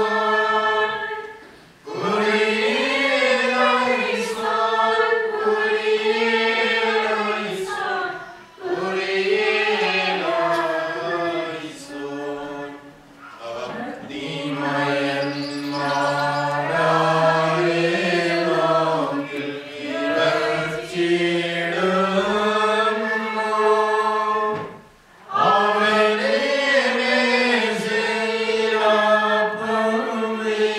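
Voices singing a liturgical chant of the Syriac Qurbono (Mass) in long held phrases, with short breaks between phrases about 2, 8.5, 13 and 25 seconds in.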